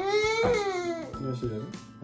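A one-year-old girl's loud, high-pitched fussing cry lasting about a second, rising then falling in pitch, with children's background music underneath.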